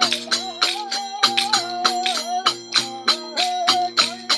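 Devotional bhajan music: a steady drone under a gliding, wavering melody line, with rapid jingling percussion strikes several times a second.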